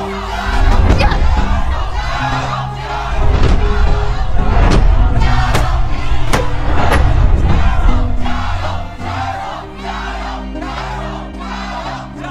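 A crowd of spectators chanting a cheer in unison ("Tingyi, jia you!"), with loud dramatic soundtrack music that has a heavy bass underneath. The chanting and music are loudest for most of the first eight seconds, then ease off.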